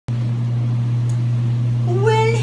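Whirlpool bathtub's jet pump running, a steady low hum; a woman's voice comes in near the end.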